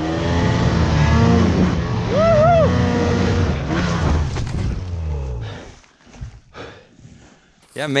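Snowmobile engine revving hard under load as it pushes up through deep powder, its pitch rising and falling, then sinking and stopping about five and a half seconds in as the sled rolls over in the snow.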